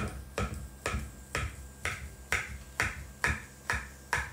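Knife sawing back and forth through a soft, moist almond cake in a ceramic baking dish, the blade scraping the dish with each stroke. The strokes are sharp, evenly spaced scrapes, about two a second.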